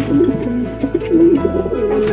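Background music: a wavering melody over a steady low drone, with pigeons cooing underneath.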